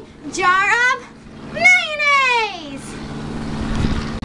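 A girl's voice giving two high, sliding vocal calls without clear words, the second a long falling cry. After that, a low steady hum grows louder toward the end.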